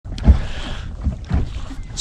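Small waves slapping against the hull of a bass boat on choppy water, a few low thumps with the loudest near the start, over a rough rush of wind on the microphone.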